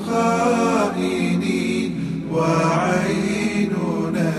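Male voices singing an Arabic nasheed: wordless melodic sung phrases of about a second each, over a steady low drone.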